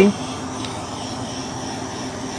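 Handheld heat gun blowing steadily as it is moved over wet glass enamel to dry it and form cells, a constant fan hum with a faint high whine.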